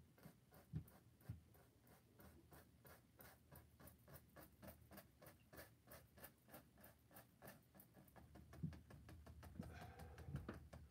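Faint, quick strokes of a paintbrush working acrylic paint into a canvas, a light scratch about four times a second. A few soft low thumps come near the start and near the end.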